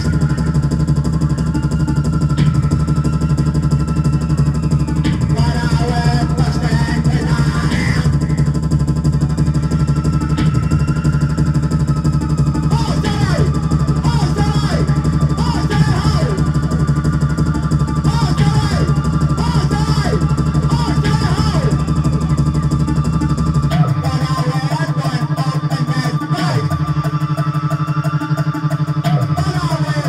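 Live electro punk band playing loud amplified music: keyboard synth, electric guitar and a male singer at the microphone. A steady low bass drone drops out about four seconds before the end, leaving the higher parts going.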